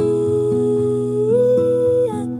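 Acoustic ballad: a female voice holds a long wordless note over softly picked acoustic guitar. The note steps up in pitch a little past a second in and stops near the end.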